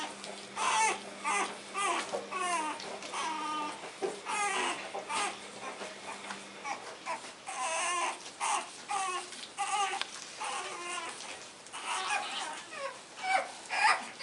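Pug puppies whining and yelping: a steady string of short, high, wavering cries, one after another.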